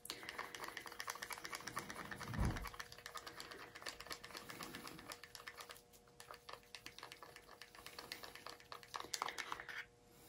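Rapid clicking and scraping of a mixing stick against a small plastic cup as acrylic paint is stirred, with one low thump about two and a half seconds in; the clicking thins out after about six seconds.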